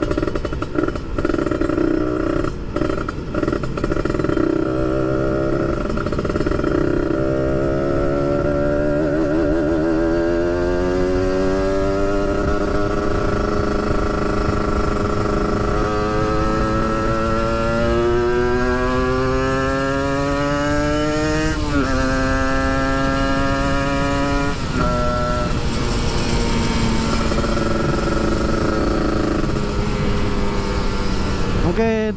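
Kawasaki Ninja 150RR two-stroke single-cylinder engine heard from the saddle under way. It runs steady at first, then revs climb through the gears, with sudden drops in pitch at upshifts about halfway through and again twice about three-quarters through, before it settles into a steady cruise.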